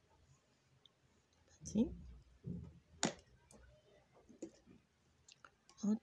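Knitting needles clicking together as stitches are worked, a few scattered clicks with one sharp click about three seconds in. A low murmured voice comes briefly around two seconds in.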